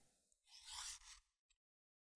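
A knife blade drawn once along the medium diamond plate of a Work Sharp Guided Field Sharpener: one short, faint scrape of steel on diamond abrasive, under a second long.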